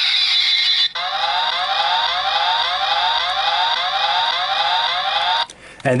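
Power Rangers SPD Delta Squad Megazord toy playing its Megazord combination sound effect through its built-in speaker: a steady high electronic tone, then a siren-like rising whoop repeating about twice a second, cutting off shortly before the end.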